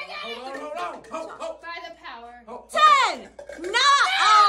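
Excited voices shouting and exclaiming through the game, with no clear words, and one loud, high yell that falls in pitch about three seconds in.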